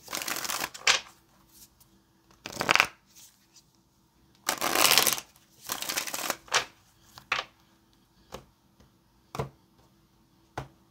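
A tarot deck being shuffled by hand in four short bursts over the first six seconds, followed by a few single sharp taps spaced about a second apart.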